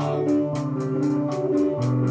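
Instrumental bars of a band's music between sung lines: sustained chords that change about half a second in and again near the end, over a steady beat of about four strokes a second.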